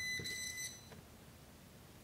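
Klein Tools NCVT-3 non-contact voltage tester sounding its high-pitched beeping alarm at the hot slot of a live receptacle, signalling that voltage is detected. The beeping stops under a second in.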